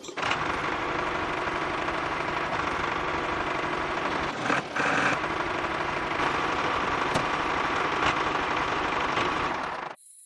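Small electric motor of a homemade miniature toy tractor running with a steady whir as it drives the toy along; it starts abruptly and cuts off just before the end.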